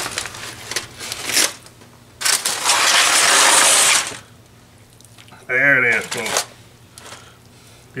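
Aluminium foil crinkling as a wrapped brisket is handled, then a loud stretch of foil crumpling and rustling lasting nearly two seconds.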